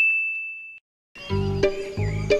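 A single bright ding, a bell-like sound effect, rings out and fades away, ending just under a second in. After a brief silence, background music with a steady beat starts.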